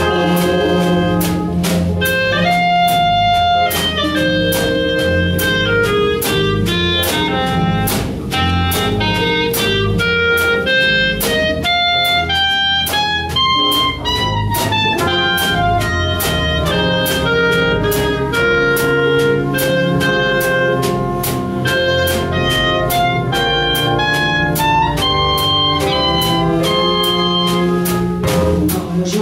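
A jazz combo plays an instrumental passage live: horns carry a melody over piano, bass and drum kit, with a steady cymbal beat.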